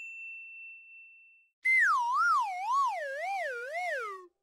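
Cartoon sound effects. A bright ding rings out and fades. About one and a half seconds in, a warbling synthetic tone starts; it wobbles up and down about twice a second as it slides steadily lower in pitch for over two seconds.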